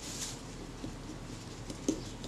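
Faint handling noise of fingers working small viewfinder glass into a Kodak Retina IIa's metal top cover, with a few light taps and rustles against a paper towel.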